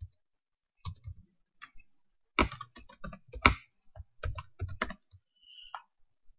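Typing on a computer keyboard: a few keystrokes about a second in, then a quick run of keystrokes from about two and a half to five seconds in, with short pauses between.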